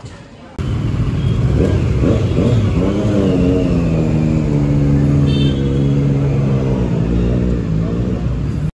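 Motorcycle engines of a group of sport bikes pulling away, starting suddenly about half a second in. The engine note rises and falls as they rev, then holds one steady pitch.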